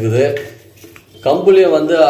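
A metal ladle stirring thin pearl-millet porridge in a stainless steel pot, clinking and scraping against the pot. A man's voice speaks at the start and again from just over a second in, with the ladle clearest in the quieter gap between.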